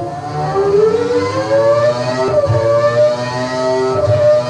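Renault Formula One racing engine revving on a dyno test bench. Its pitch climbs smoothly over the first two seconds, dips briefly, then holds steady.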